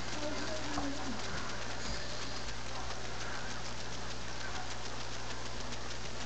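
Steady low hum and hiss of room tone, with a faint distant voice in about the first second and a half.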